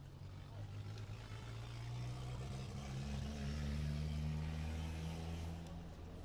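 An engine running close by, its low hum growing louder over the first few seconds, changing pitch about halfway through and fading near the end.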